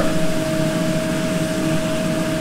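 Steady hum and rush of commercial kitchen ventilation fans, with one constant tone running through it.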